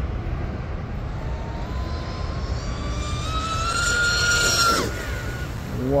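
High-pitched whine of an RC speedboat's brushless outboard motor (RocketRC 4092 1520kV on 8S) and propeller at speed, climbing steadily in pitch and loudness during the sprint, then dropping away sharply nearly five seconds in.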